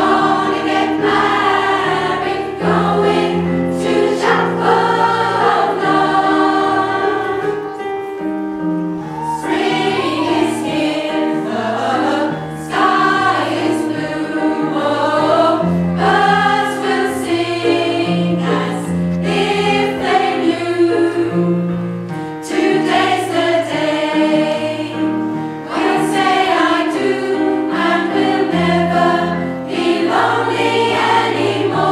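A choir of mostly women singing a 1960s song in harmony, with a bass line moving underneath.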